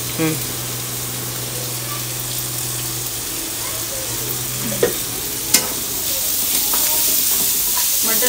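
Peas with onion and curry leaves sizzling in hot oil in a pan as they are stirred, with two sharp clicks of the spatula against the pan about five seconds in. A low steady hum stops just before the clicks.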